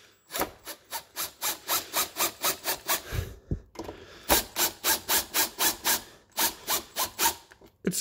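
Milwaukee M18 cordless impact driver driving a terminal screw into a light switch, in two spells of rapid, evenly spaced strokes, about four a second, with a pause of about a second between them.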